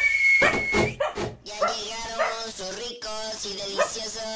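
A song's backing music ends on a final chord about a second in. After it comes a run of short animal calls, dog-like barks, about two a second.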